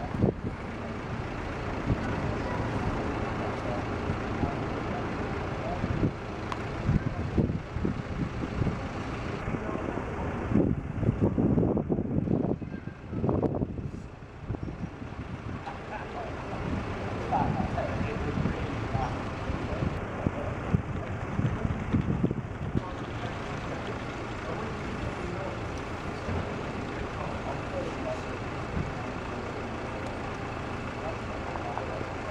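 Indistinct conversation heard from a distance over a steady low rumble of a running vehicle engine, with the voices louder around the middle.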